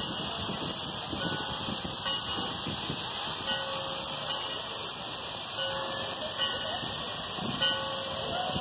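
A standing steam locomotive letting off steam in a steady hiss.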